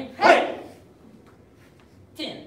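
A single loud, short shouted "Hey!", the kiai yelled with a punch on the count, about a quarter second in, its pitch falling.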